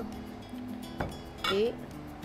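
A spoon clinks once against a serving bowl about a second in, over steady background music.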